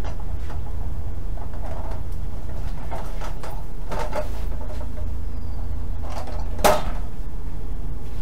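Knocks and rattles from ratchet straps and their metal ratchet buckles being handled inside a truck's curtainsider trailer, over a steady low rumble. One sharp clank about two-thirds of the way in is the loudest sound.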